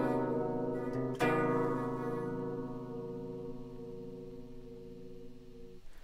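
Ibanez electric guitar playing a B major chord over a C bass note (B/C), a dissonant chord with a flat-nine bass under the triad. The chord is already ringing at the start, is struck again about a second in, and is left to ring out, fading slowly.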